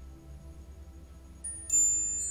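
Metal wind chimes struck twice, a light stroke about one and a half seconds in, then a louder one, their high tones ringing on. Soft background music plays underneath.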